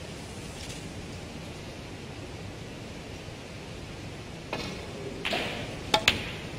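Steady hush of a quiet snooker arena, then near the end a short rustle and a single sharp click of a snooker cue tip striking the cue ball.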